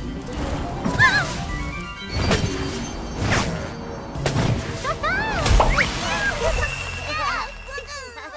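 Cartoon soundtrack of music and sound effects: several quick whooshes and impact hits, with swooping sounds that rise and fall in pitch about a second in and again around five to six seconds in.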